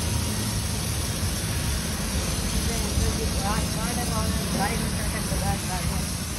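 Pressure washer jet spraying water onto a motorcycle, with a steady low machine hum under a spray hiss; faint voices come in about halfway through.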